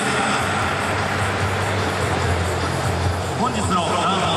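Ballpark crowd chatter with music and voices over the public-address system, on a steady low hum.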